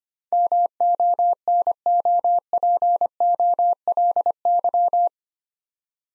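Morse code sent as a single steady beeping tone at 25 words per minute, spelling the word "monopoly" in dots and dashes; it stops about five seconds in.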